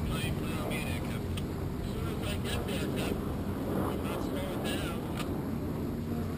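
Steady low rumble of wind on the microphone and choppy river water, with a few light knocks and faint, indistinct voices in the background.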